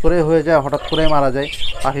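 Budgerigars chirping in an aviary, under a louder repeated low, drawn-out voice-like call that comes about three times, each lasting around half a second.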